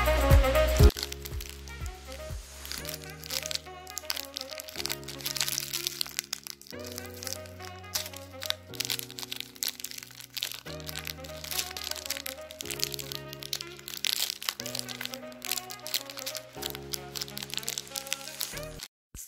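Background music of slow held chords that change every couple of seconds, with a louder beat in the first second. Over it, a foil snack wrapper crinkles and crackles as it is handled and pulled open.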